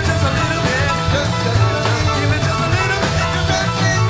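Rock band playing an instrumental jam: drum kit keeping a steady beat on the cymbals, a driving bass line, and electric guitar lead lines with bent notes.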